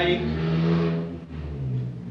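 A man's voice drawing out a word for about a second, then a pause over a low steady hum.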